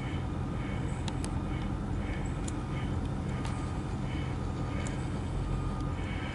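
Vehicle engine idling, heard from inside the cab: a steady low rumble with a few faint ticks over it.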